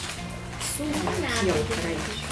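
Background music with indistinct talking over it.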